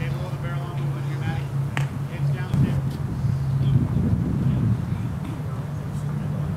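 Distant voices and chatter over a steady low hum, with one sharp click about two seconds in.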